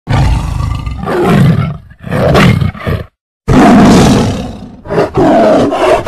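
Several loud lion roars in a row, the film-logo lion roar of the MGM intro, with a short break of silence about three seconds in.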